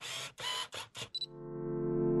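About four camera-shutter clicks in quick succession, added as sound effects to a photography logo. From a little over a second in, a sustained synthesizer chord swells in and grows steadily louder.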